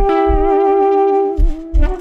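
Alto saxophone and electric guitar holding long notes together, one of them wavering in a strong, even vibrato while the other stays steady, over a few low electronic beats.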